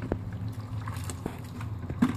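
Window-cleaning strip washer (mop) being dipped and swished in a bucket of water, with a few light clicks.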